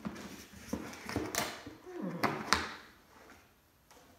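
Handling noise from a gold parable box as its lid is lifted off and a felt cloth is drawn out: scraping and rubbing with several sharp knocks, the loudest two coming a little past the middle.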